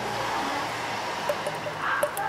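Thick radiator stop-leak sealant poured from a plastic bottle into a car's coolant expansion tank: a steady trickling pour.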